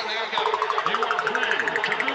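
Electronic dance music from a techno-house DJ mix. About a third of a second in, fast ticking hi-hats and a stuttering synth sweep that rises in pitch come in under a voice.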